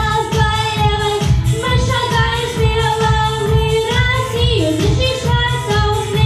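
A young boy singing a pop song into a handheld microphone over a backing track with a steady beat, holding long notes.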